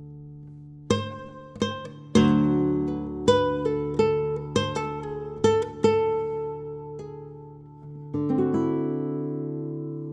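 Flamenco guitar played fingerstyle in Rondeña tuning (D-A-D-F#-B-E): a phrase of single plucked notes and slurs over a low open D that rings throughout. A full chord sounds about two seconds in, and a rolled chord near the end is left to ring.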